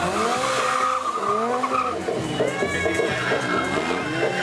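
Stunt motorcycle engine revving up and down repeatedly, with a tyre squealing on the tarmac during the first two seconds.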